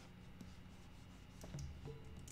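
Faint scratching of a stylus drawing strokes on a pen tablet. Soft music comes in about one and a half seconds in.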